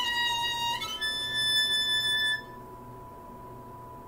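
Solo violin playing two sustained high bowed notes. The second note is held about a second and a half and stops suddenly about two and a half seconds in.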